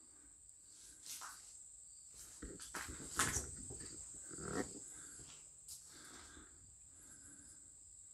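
Footsteps scuffing and crunching on a debris-strewn concrete floor, a handful of irregular knocks and scrapes, loudest in the first half, over a faint steady high-pitched whine.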